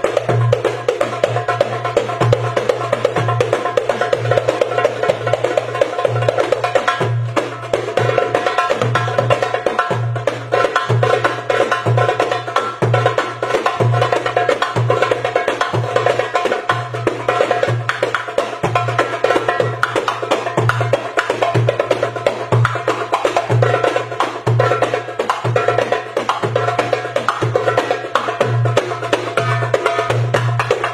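Crown Sparkling darbukas, metal goblet drums, played by hand in a fast, unbroken rhythm: dense, crisp finger strokes over a deep bass stroke that recurs steadily.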